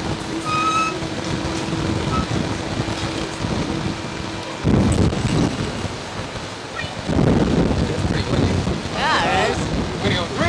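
Wind gusting against an outdoor microphone, with strong swells about halfway through and again about seven seconds in, over a steady low hum during the first half. A person's voice rises and falls near the end.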